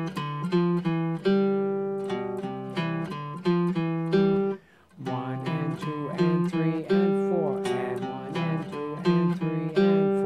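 Hollow-body archtop guitar picked in a rhythmic run of notes and chords, in two phrases with a short break about halfway through.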